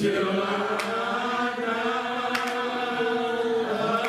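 Slow devotional hymn singing by voices in church, drawn out in long held notes, with a few sharp clicks.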